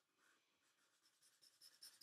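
Faint felt-tip marker drawing on paper: a quick run of short strokes that starts about halfway through and grows louder near the end.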